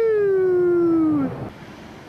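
A long howl: one held call that peaks in pitch near the start, then slides slowly downward and ends after about a second and a half.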